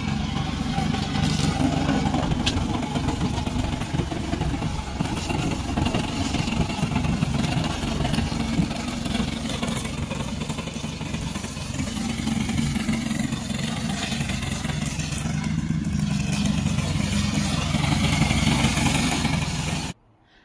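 Engine of a remote-controlled tracked slope mower running steadily under load as it drives through and cuts tall dry weeds, its level rising and falling a little as it works.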